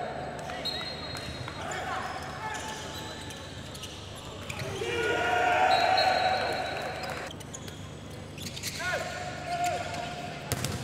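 Handball game sounds on an indoor court: the ball bouncing on the floor with short knocks, shoes squeaking in short gliding chirps, and players' voices calling out.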